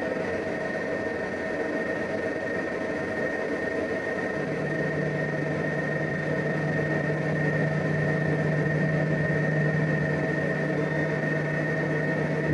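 Steady hum and whir of running bench test equipment, with a constant thin high whine and a low hum that comes in about four and a half seconds in.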